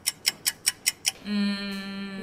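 Clock-ticking sound effect, about five sharp ticks a second, marking thinking time; it stops about a second in and a steady low held tone takes over.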